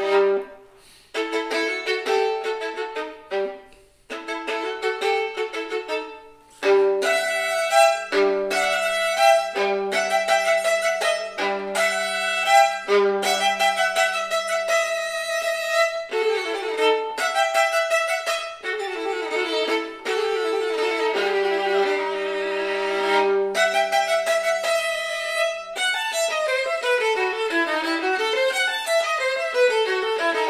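Solo violin, bowed, playing a contemporary piece. The phrases break off with short pauses in the first few seconds, then run on without a break, ending in quick runs that rise and fall.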